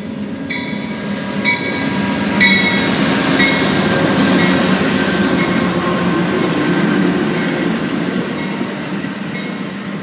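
Amtrak GE Genesis P42DC diesel locomotive pulling slowly past at close range, its bell ringing about once a second. The engine and wheel rumble swells as the locomotive goes by, loudest in the middle, then eases as the double-deck passenger cars roll past.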